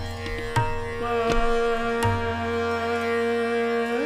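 Hindustani classical music in Raga Darbari: vocal and harmonium hold one long steady note over the tanpura drone, with a few tabla strokes in the first half.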